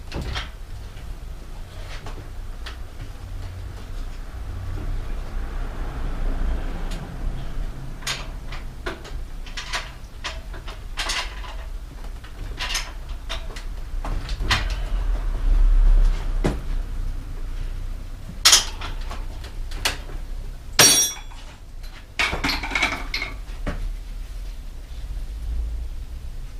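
Hand work on a bicycle during an inner-tube change: scattered clicks, knocks and rubbing of the tyre, tube and parts being handled. There is a heavier thump about midway and a few sharp clicks later.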